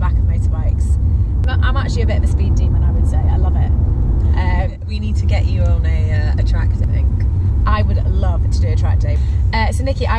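Steady low road rumble inside the cabin of a moving BMW i8, with women's voices and laughter over it. The rumble dips briefly about halfway through.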